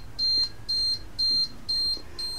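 A high-pitched electronic beep repeating evenly about twice a second, four beeps in all, each a little under half a second long.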